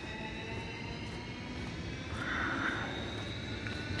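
Distant vehicle drone: steady background noise with several faint high whining tones that drift slowly in pitch, swelling a little past the middle.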